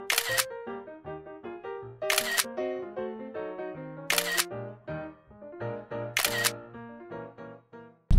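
Background music, a melody of short notes, with a camera shutter click four times, about every two seconds.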